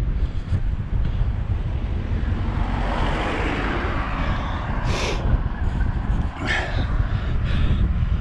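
Wind buffeting the microphone of a bike-mounted camera while riding into a strong wind, a steady rumbling rush that swells a little about halfway through.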